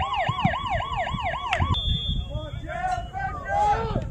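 A siren sounding in quick repeated downward sweeps, about four a second, that cuts off abruptly before two seconds in. Voices call out after it.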